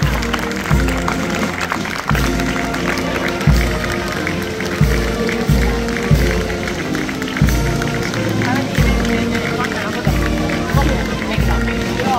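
A procession band playing a slow march: bass drum strokes roughly every second under sustained band chords, with crowd voices mixed in.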